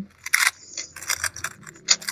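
A 3x3 speedcube being turned fast: an irregular run of quick plastic clicks and clacks.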